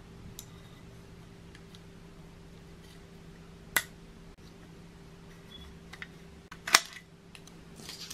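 Sharp clicks and small taps from handling an opened metal sewing-machine foot-control pedal while tape is pressed over its wiring: two clear clicks, about four seconds in and, loudest, near the end.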